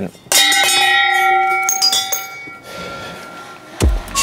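A bell is struck once, about a third of a second in, and rings with several clear tones that fade away over the next couple of seconds. Near the end a deep thud comes in as music starts.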